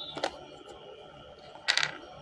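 Pause in a TV sports broadcast's commentary, heard through the television's speaker: a faint steady background, a short click about a quarter of a second in, and a brief hissing rustle near the end.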